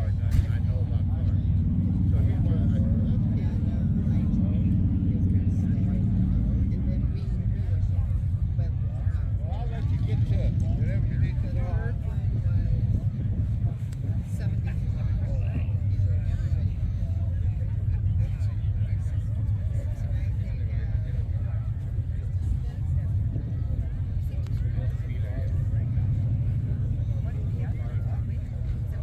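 A vehicle engine idling steadily close by, a low hum that runs throughout, under the chatter of people talking in the background.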